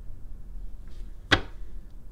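A single sharp snap of a stiff paper card being set down on the table, about a second and a half in, over a low steady hum.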